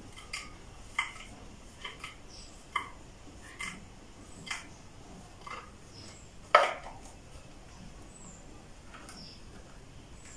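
Wooden connecting arm being screwed by hand onto a screw and nut in a wooden table base: a series of light clicks and knocks, about one a second, as the arm is turned, with one louder knock about six and a half seconds in.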